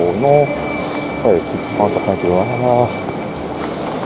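A man's voice making a few short, unclear utterances over steady background noise of a station concourse, with a faint steady high tone that stops about three seconds in.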